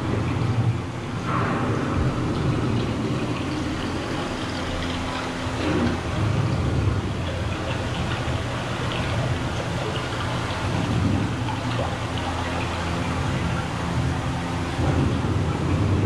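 Rain-like rushing ambience over a steady low hum, from a dark ride's show soundtrack of nature effects.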